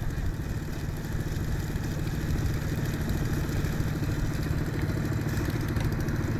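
A small engine running steadily at idle, with water sloshing as a sieve of riverbed sludge is swirled in the river.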